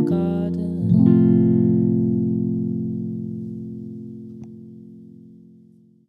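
Instrumental background music: a sustained chord is struck about a second in and left to ring, slowly fading away.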